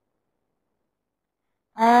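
Dead digital silence with no room tone, the web-conference audio feed cut out. A voice starts speaking near the end.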